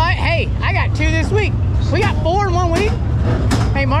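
Men's voices talking and exclaiming in animated, pitch-swooping bursts over a steady low rumble.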